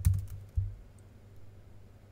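Computer keyboard being typed on: a few sharp keystrokes in the first second, loudest right at the start, then only faint key taps.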